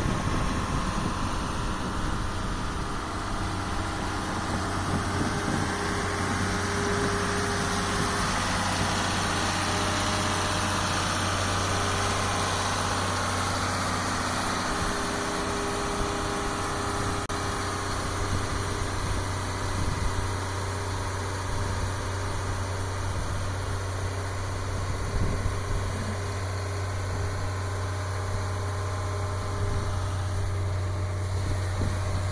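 Rotary snow blower truck running steadily, a low engine drone under the even hiss of the blower throwing snow.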